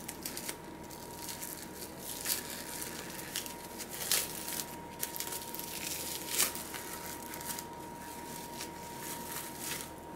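Plastic wrapping crinkling and tearing in scattered small crackles, with a few sharper ones, as a sealed cup of cooking oil is unwrapped.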